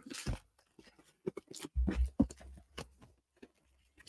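Cardboard shipping box and its packaging being handled and opened by hand: irregular rustling, crinkling and scraping with a few dull knocks, loudest about two seconds in.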